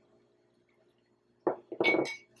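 Near silence, then a plastic measuring spoon knocks twice against a glass bowl about one and a half seconds in, the second knock leaving a short clear ring.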